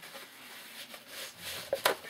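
A paper towel being pulled out and handled, with soft rustling and one short, sharp crackle near the end.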